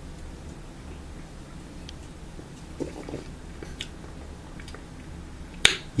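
A person sipping from an aluminium energy-drink can, with faint small mouth and swallowing clicks over a low steady hum, and one sharp click near the end.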